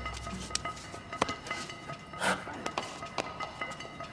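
Quiet, tense film score of steady high held tones, with a few short knocks and clicks scattered through it; the clearest comes a little past the middle.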